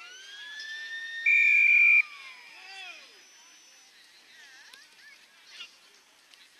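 Football ground's siren sounding to start the quarter: it winds up in pitch, holds, then winds down and dies away within about three seconds. A short, loud, steady whistle blast cuts in over it about a second in.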